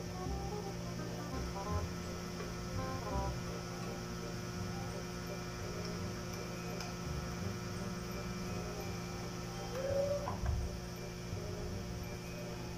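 A steady low electrical hum, with faint background music over it.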